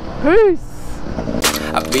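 A short rising-and-falling vocal call, then a rap music track starts about a second and a half in, over a low rumble.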